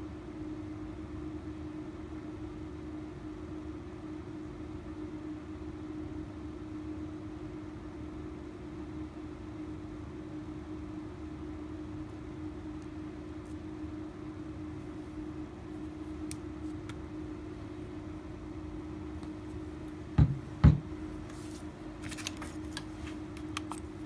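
A steady low hum with one constant tone runs through the workshop. Near the end come two dull knocks close together as the plastic epoxy bottle is set down on the bench. The pouring itself makes no audible sound.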